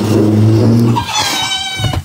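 A girl's closed-mouth hum of effort, low and steady, breaking about a second in into a high-pitched squeal held for most of a second.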